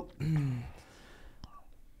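A short, low spoken sound from a man's voice in the first second, then a quiet pause with a faint click about one and a half seconds in.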